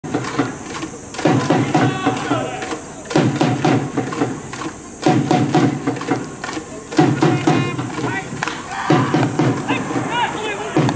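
Organised fan cheering: a group of voices chanting in repeated phrases about two seconds long, over steady drumbeats.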